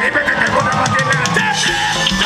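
Live band playing upbeat dance music, with drum kit and electric guitar and a voice over the music.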